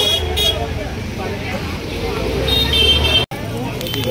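Busy market street noise: a steady low vehicle rumble with voices in the background and a vehicle horn tooting briefly near the end. The sound breaks off abruptly about three seconds in.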